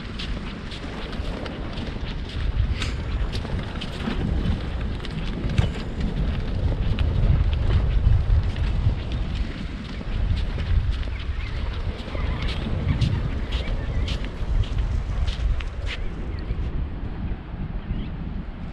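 Strong onshore wind buffeting the microphone in gusts, a heavy rumble that swells and eases every few seconds, with scattered sharp ticks on top.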